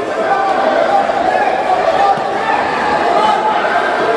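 A crowd of spectators in an indoor sports hall, many voices talking and calling out at once.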